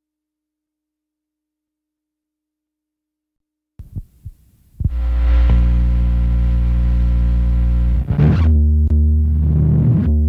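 Nearly four seconds of silence in the gap between tracks, then a rock track begins: a few quiet notes, then loud distorted electric guitar and bass chords held steady, with a sharp change in the chord about three seconds later.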